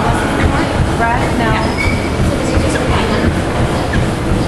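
Loud steady din of an indoor racquetball court, with a quick run of short squeals about a second in, typical of rubber-soled shoes squeaking on the hardwood floor.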